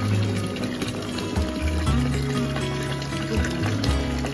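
Background music over hot-spring water pouring steadily from a spout into a bath.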